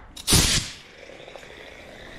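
A short laugh, then a pneumatic cut-off wheel tool gives one brief hissing burst of air, about a third of a second long, after which only a faint background remains.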